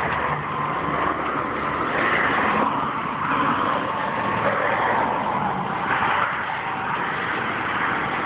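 Steady road noise of highway traffic passing on the bridge, swelling slightly a couple of times as vehicles go by.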